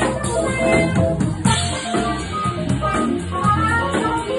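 Live jazz band playing an instrumental passage: a steady drum-kit beat under a bass line and short melody notes.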